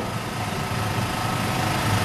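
A steady low mechanical drone, like an engine running, with a constant low hum under it.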